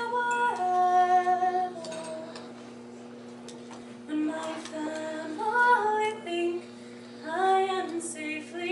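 A woman singing an English folk tune solo and unaccompanied, in slow held notes. The phrases break off for about two seconds a couple of seconds in, and again briefly near the end.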